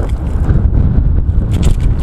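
Strong gale buffeting the microphone: a loud, continuous low rumble. Loose paper pages flap and crackle in the wind near the end.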